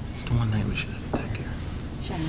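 Faint, indistinct speech from someone talking away from the microphone.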